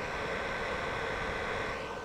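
Hi-1000 power inverter running: a steady whirring noise with a constant high whine.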